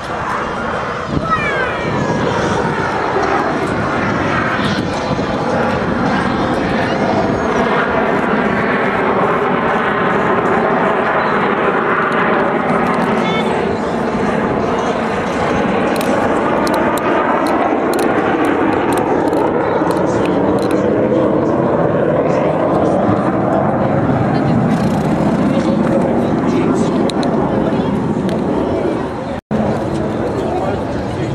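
Four Blue Angels F/A-18 Hornet jets in diamond formation passing overhead: a loud, continuous jet roar that builds about a second in. Its pitch bends as the formation goes by, and it cuts out briefly just before the end.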